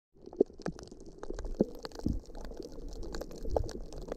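Muffled underwater sound from a camera held below the surface of shallow sea water: a low gurgling rumble with irregular sharp clicks and pops scattered through it.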